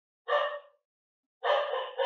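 Two short animal calls, each about half a second long, the second running on almost into the next spoken words.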